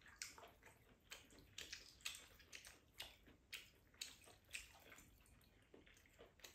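Faint eating sounds: wet chewing and lip smacks over a rice bowl, with soft clicks of chopsticks and a spoon against ceramic bowls, about two short sounds a second.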